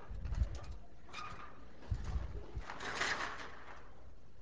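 Dull thumps and rustling from a person climbing down a metal stepladder, in two groups of low knocks with a short rustle near the end.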